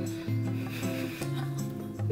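Eyebrow pencil rubbing in short strokes across the skin of the brow, over background music with a low bass line that changes note every half second or so.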